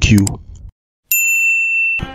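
A single bright notification-bell ding sound effect about a second in, ringing on steadily and then cut off abruptly.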